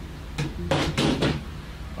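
Hollow PVC pipe knocking and clattering against the worktable and other pipe pieces: a handful of sharp plastic knocks over about a second, starting about half a second in.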